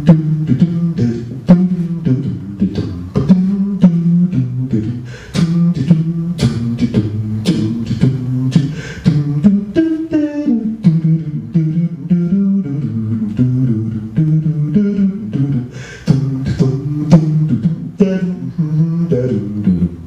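A man beatboxing a steady beat into a microphone while singing a low wordless line that steps up and down between the strokes: one voice standing in for the drums and bass of a jazz band.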